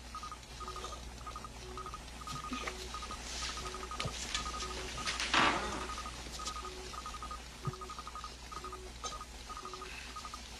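Electronic beeping in a repeating pattern: quick runs of high pips over a lower beep about every three-quarters of a second. A short rushing sound comes about five seconds in and is the loudest moment.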